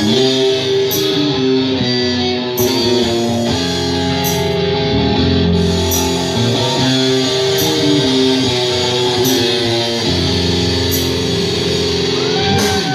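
A live rock band plays loud and without vocals: electric guitars hold sustained chords and notes over bass, with a short crash about once a second.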